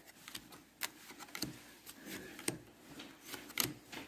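Topps baseball cards being thumbed through by hand, one card at a time off a stack: quiet, irregular clicks and slides of card stock.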